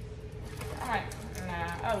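A woman's voice speaking briefly, over low kitchen room noise.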